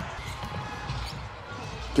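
Faint, steady basketball-arena background noise during a stoppage in play, with no distinct bounces or calls standing out.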